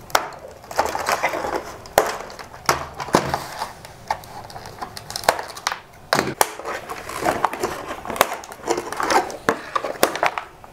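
Scissors snipping the ties that hold plastic toy blasters to a cardboard box insert, with scattered sharp clicks and knocks and cardboard and plastic rustling as the blasters are pulled free.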